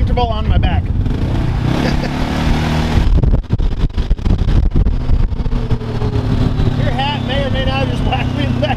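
Gravely Atlas side-by-side utility vehicle's engine running steadily as it drives along, with buffeting noise in the middle stretch.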